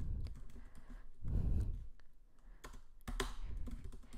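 Typing on a computer keyboard: irregular key clicks, with a brief low rumble about a second and a half in.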